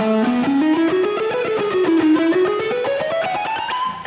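Electric guitar playing a fast run of picked single notes in an economy-picked scale sequence, dipping briefly, then climbing steadily higher toward the end.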